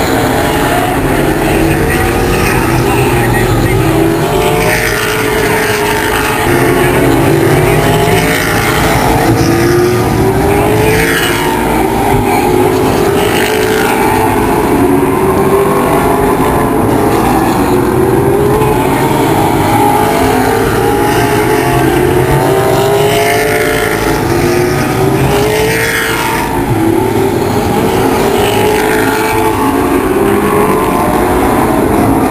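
Late model stock cars racing on an oval, their V8 engines climbing in pitch again and again as the cars accelerate off the turns.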